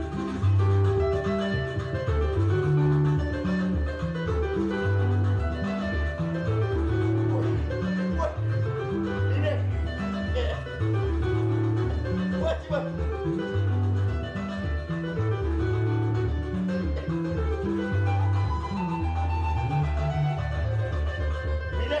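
Electric bass and electric guitar playing together: a busy bass line of distinct stepping notes under a higher, melodic guitar line, running continuously.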